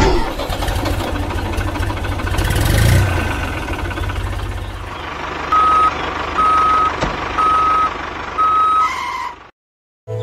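Tractor engine sound effect: a diesel engine running with a rapid low chug, loudest about three seconds in. Over it, a reversing alarm beeps four times about a second apart, and the sound cuts off suddenly just before the end.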